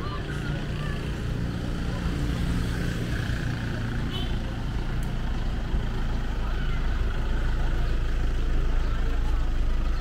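Roadside traffic: a minivan drives past close by, its low engine and tyre rumble growing louder through the second half. Faint voices of people on the sidewalk underneath.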